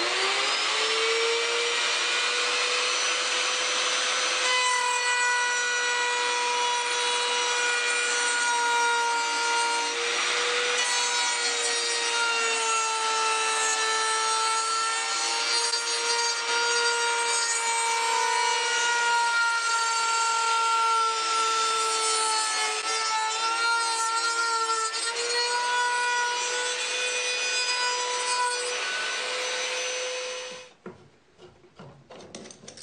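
Wood router mounted in a shop-built pantorouter, spinning up at the start and then running with a steady whine while its bit cuts a tenon full depth in one pass. The pitch sags briefly about a third of the way in and again in the last third as the bit takes load.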